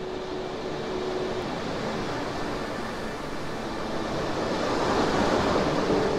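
A rushing noise like surf or wind, building up to its loudest near the end. Faint music tones die away in the first second or two.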